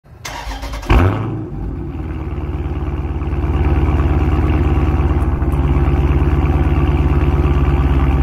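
Car engine cranked over by the starter and catching just before a second in, then idling with a steady, even exhaust pulse, heard close to the tailpipe.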